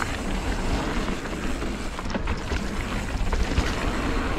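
Calibre Triple B mountain bike riding fast down a loose gravel trail: tyres rolling and crunching over stone with the bike rattling, under a steady rush of wind on the helmet-mounted camera's microphone.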